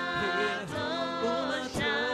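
Worship singers, men's and a woman's voices together, singing a gospel song in harmony and holding long notes.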